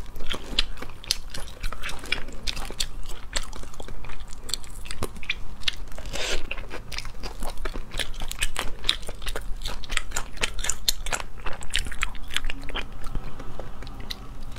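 Close-miked eating of spicy crayfish: shells cracked and peeled by hand, with biting and chewing, making a dense, irregular run of sharp crackles and clicks.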